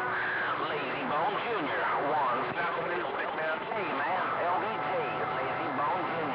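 CB radio receiver playing garbled, overlapping voices of distant stations under steady static, with steady whistling tones from signals beating against each other in the second half.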